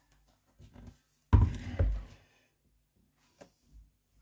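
Handling knocks of a Thermomix's stainless-steel mixing bowl as it is lifted out of its base: one heavy thunk about a second in that rings briefly, with a few faint knocks around it.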